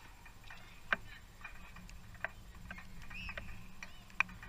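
Distant sharp pops of a football being kicked on an artificial pitch: two clear strikes, one about a second in and another just past two seconds, with fainter ticks between them.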